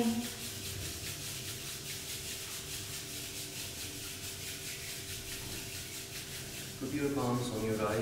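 Hands rubbing palms together in a quick, steady back-and-forth rasp, warming the palms before they are cupped over the eyes.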